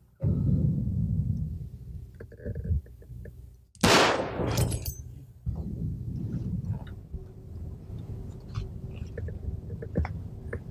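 A single revolver shot about four seconds in: a sharp crack with a trailing tail. A low rumble runs under the first half.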